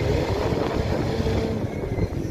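Low, steady rumble of car engines running, with wind noise on the microphone.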